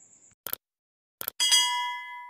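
Subscribe-button animation sound effect: short mouse-click clicks, then a bright bell-like notification ding that rings and fades.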